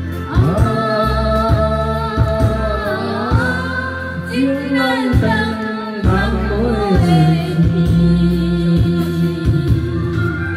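Woman and man singing a karaoke duet into handheld microphones over a backing track with a steady bass line and drum beat.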